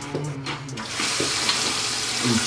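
Water running from a bathroom tap into the sink, a steady hiss that comes up about half a second in and keeps running.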